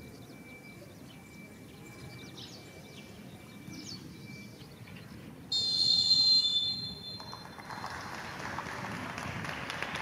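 Low outdoor rumble, then about halfway a referee's whistle blown once, loud and high, for about a second and a half before fading, followed by a rush of noise.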